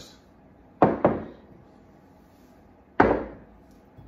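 Glazed ceramic mugs set down on a wooden tabletop: a quick double knock about a second in, then a single knock about three seconds in.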